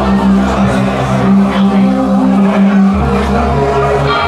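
Loud live rock band holding a sustained low chord on bass and keyboard, moving to a new chord about three seconds in.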